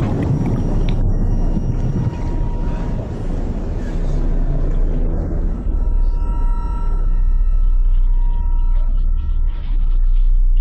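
Low, steady underwater rumble on an underwater camera's sound track, with faint high steady tones coming in about halfway through.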